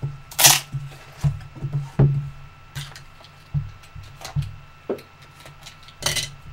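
Cardboard trading-card box being handled and opened: a quick irregular string of rustling slides and light knocks as the lid comes off and the card pack inside is pulled out, the loudest about half a second in and again at two seconds.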